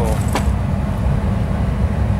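A steady low rumble of running machinery, like a vehicle engine, with a brief crinkle of a plastic bag near the start.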